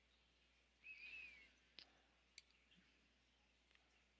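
Near silence: room tone, with one faint short wavering chirp about a second in and a few faint ticks.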